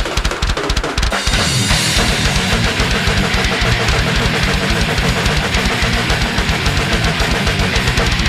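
Death metal band playing an instrumental passage with no vocals: rapid, evenly spaced kick-drum strokes and cymbals under heavy guitar, the cymbals opening up about two seconds in.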